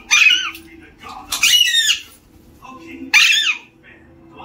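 A pet green parakeet squawking three times: loud, shrill calls near the start, about a second and a half in, and about three seconds in.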